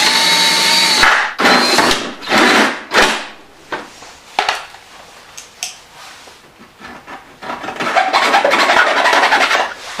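Cordless drill turning a hole saw through the plastic of a hydroponic flood tray, run in reverse for a cleaner cut. A steady whine comes first, then short bursts of cutting, a quieter stretch, and a longer run of cutting noise near the end.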